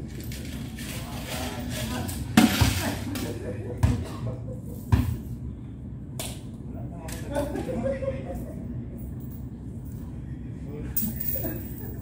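Coins clinking and scattering on concrete steps, with a short jingling rattle about two and a half seconds in, then a few dull thuds around four and five seconds; voices murmur in the background.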